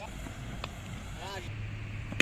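Cricket players calling out across an open field: one short shout about a second in, with a faint click, over a steady low rumble.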